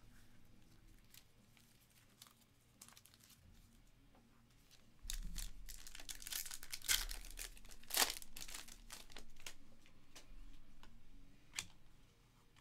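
A Panini Select trading-card pack's plastic wrapper being torn open and crinkled by hand, starting about five seconds in, with two sharper rips a few seconds later. Before that there are only a few faint taps.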